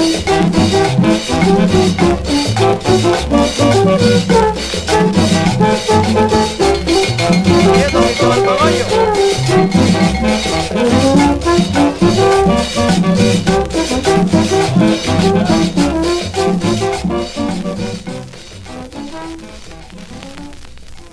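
Instrumental close of a vallenato paseo. Button accordion plays the melody over a repeating bass line and a steady, even percussion beat, with no singing. The music fades out over the last few seconds.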